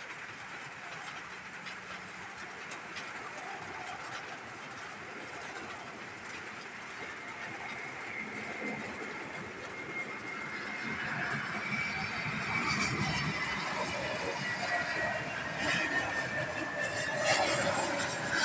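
Airbus A321neo jet on final approach: a steady rush of jet engine noise that grows louder as the aircraft nears, with a high engine whine coming in about ten seconds in and dropping slightly in pitch.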